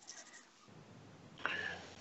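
A pause in the talk: near quiet, then a short, soft rustling noise for about half a second near the end.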